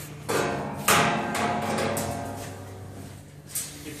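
Sheet-metal clanks: a knock, then a louder clang about half a second later. After the clang a ringing tone slowly fades over about two seconds, and there is another knock near the end.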